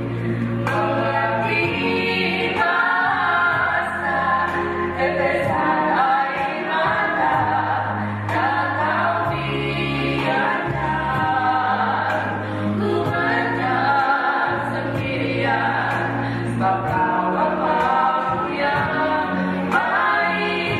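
A small group of women singing a Christian church song together into handheld microphones, amplified, over steady low bass notes that change every second or two.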